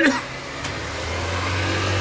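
A motor vehicle's engine running, a low steady hum that grows gradually louder.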